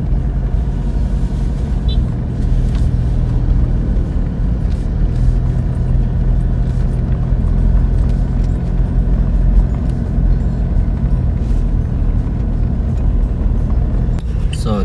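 A car driving at road speed, heard from inside the cabin: a steady low rumble of engine and tyre noise.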